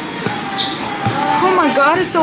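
A woman's voice, its pitch sliding up and down, coming in a little past halfway, after a couple of soft thumps.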